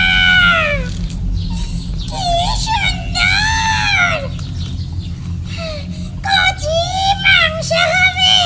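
Several long, high-pitched vocal calls, each rising and then falling over about a second, over a steady low hum.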